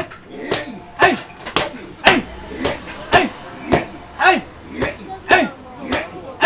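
Wooden mallet pounding green matcha mochi in a wooden mortar, with the dough slapped and turned by hand between blows: a fast, even rhythm of strikes about two a second. Each strike is followed by a short shouted call from the pounders that keeps the rhythm.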